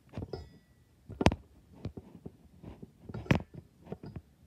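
Close handling noise: soft rustles and sharp short knocks, most likely a phone being held and shifted against a fabric couch, with the two loudest knocks about a second and three seconds in.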